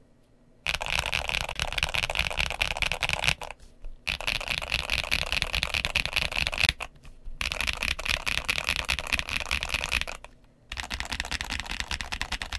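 Fast typing on a GMK67 mechanical keyboard with Milk Princess frankenswitches (MMD Princess 53 g linear stem and spring in a Gateron Milky Red housing) under YQ Dolch Cherry-profile keycaps. The keystrokes come in dense runs of about three seconds each, with short pauses between them.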